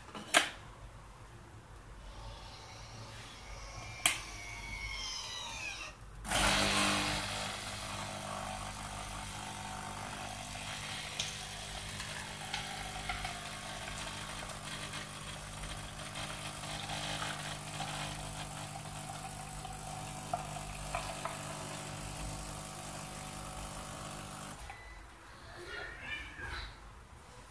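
Dolce Gusto capsule coffee machine brewing: a few sharp clicks from its lever, then about six seconds in the pump starts and runs with a steady hum while coffee pours into the cup. It shuts off about a second before the end.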